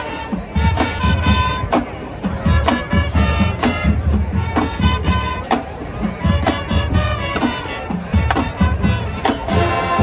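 High school marching band playing live: sustained horn chords over a drumline, with sharp, regular drum strokes and heavy bass drum pulses.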